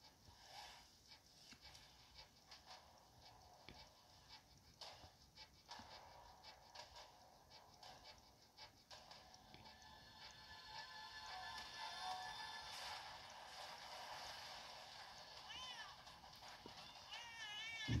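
Faint film-trailer soundtrack, music with clicks and effects, playing through a portable DVD player's small built-in speaker and growing fuller about ten seconds in. A wavering high call sounds near the end, and a low thump lands at the very end.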